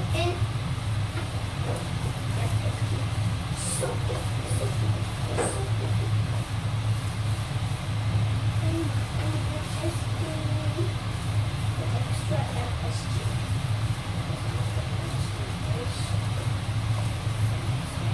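A spatula scraping and tapping a wok during stir-frying of fried rice, in scattered short strokes, over a steady low hum.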